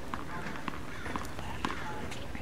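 Light, sharp taps on a hard tennis court, about one every half second, over faint background voices.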